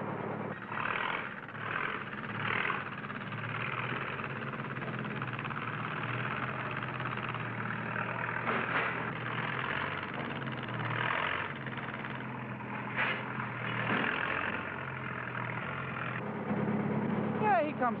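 Engine of a scrap-yard crane with a lifting magnet running steadily, with metal clanking now and then.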